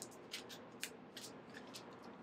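Faint, crisp flicks of a paperback's pages being riffled and handled by fingers: a quick, uneven run of short ticks, about four a second.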